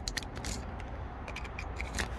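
Faint clicks and scrapes of a plastic key fob and its metal emergency key blade being handled, with a low steady background rumble.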